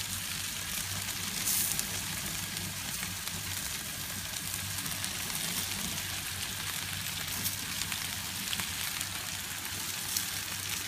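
Trout and foil-wrapped food sizzling on a gas grill: a steady hiss with scattered small crackles, over a low steady hum.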